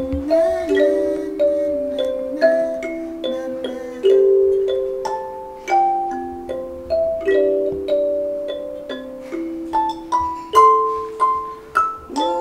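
Wooden box kalimba (thumb piano) with metal tines plucked by thumbs, playing a slow melody of single ringing notes that each fade before the next. The notes climb higher near the end.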